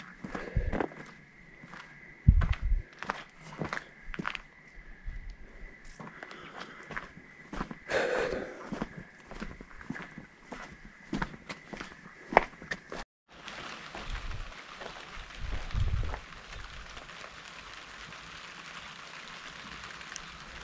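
Footsteps on dirt and gravel, with plastic tarp sheeting rustling and crinkling as it brushes past, over a faint steady high tone. About two-thirds of the way in the sound breaks off and gives way to a steady hiss of light rain.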